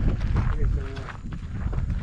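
Brief indistinct talking, with footsteps on a gravel path underneath.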